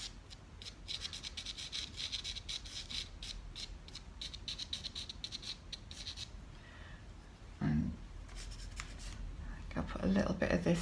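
Pastel pencil scratching across sanded UART pastel paper in rapid short strokes during fine detail layering. It pauses about two-thirds of the way through, then a few more strokes come near the end.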